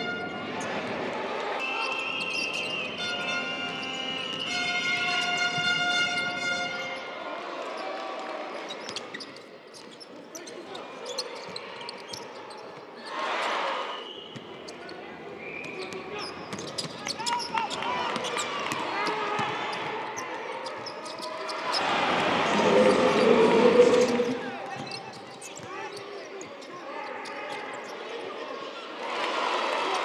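Basketball game court sound: a ball bouncing on the hardwood floor among other short sharp knocks of play. A crowd swells up briefly partway through and louder about two-thirds of the way in.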